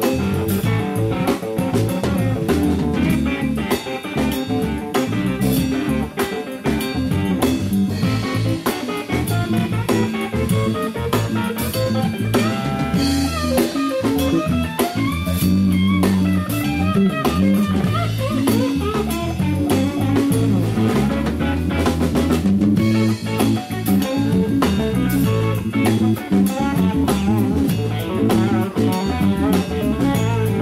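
Live blues band playing an instrumental passage: guitars over bass and a drum kit, with guitar notes bending in pitch about halfway through.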